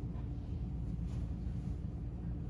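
Steady low rumble of room background noise, with a faint steady hum and a brief faint hiss about a second in.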